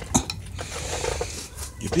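A single sharp metallic clink a moment in, as a big screwdriver is handled against the brake parts, then a faint rustle of handling; a man's voice begins near the end.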